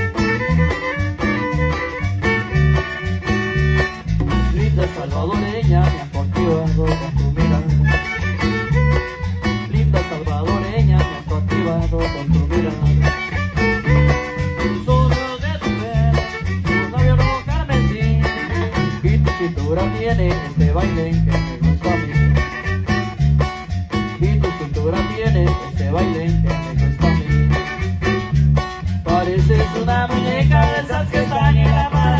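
Live chanchona band playing tropical dance music, with plucked strings and a steady, even bass beat that runs without a break.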